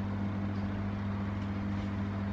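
Steady low electrical hum with a faint even hiss behind it, unchanging throughout.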